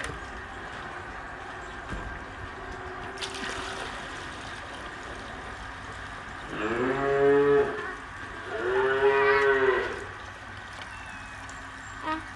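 Cattle mooing: two calls, each just over a second long, about a second apart, in the second half.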